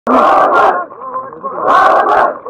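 A crowd of soldiers shouting a chant together: two loud massed shouts about a second and a half apart, with fists raised in time.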